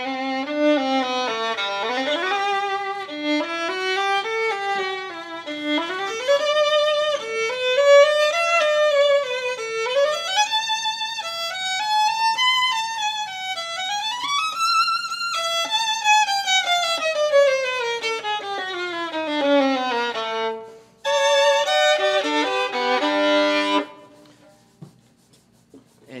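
A master-grade violin played solo, a melodic passage of rising and falling runs that ends in a long falling run. Near the end come a few seconds of bowed chords, then the playing stops.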